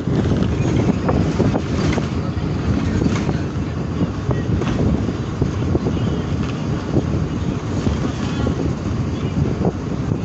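Passenger bus running along a road, heard from inside a seat by an open window: a steady engine and road rumble with wind rushing in.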